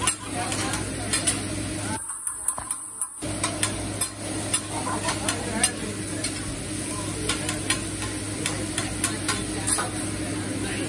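Metal hibachi spatula scraping and clicking against a flat-top teppanyaki griddle as it chops and spreads a mound of rice, with a steady sizzle underneath. The clicks come irregularly, several a second, and the sound dips for about a second about two seconds in.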